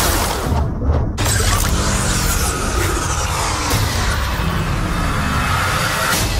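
Action film trailer soundtrack: loud score mixed with crash and shattering sound effects. The high end drops away for a moment, then a sudden crash comes in just over a second in.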